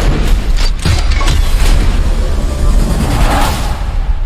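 Movie trailer soundtrack: deep booms and a heavy rumble under dramatic music, with several sharp hits in the first two seconds.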